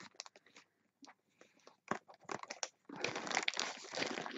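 Plastic mailing bag crinkling and rustling under the hands, with a few scattered clicks at first and steady crinkling from about three seconds in.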